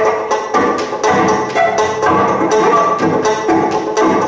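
Live acoustic trio of banjo, cello and saxophone playing, the banjo's picked notes keeping a quick steady rhythm under held tones.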